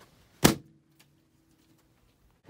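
A balloon popped: one sharp bang about half a second in, followed by a faint ringing tone that dies away over about a second.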